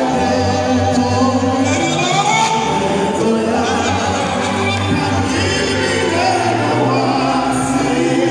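Live gospel music: voices singing with vibrato, with choir voices, over steady held low instrumental notes.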